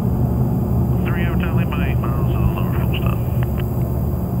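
Steady low drone of the blimp's engines heard from inside the gondola cabin, with faint voices in the background about a second in.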